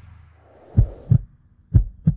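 Heartbeat-style sound effect in an animated logo intro: two deep double thumps, lub-dub, about a second in and again near the end, over a faint low hum.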